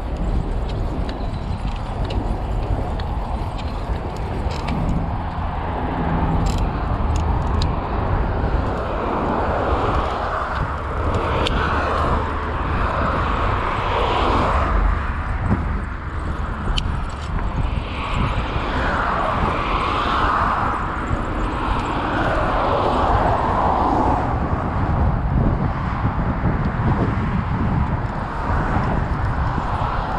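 Wind rumble on the microphone of a camera riding on a moving bicycle, with vehicle traffic noise swelling and fading as it passes. A few light clicks come about six to eight seconds in.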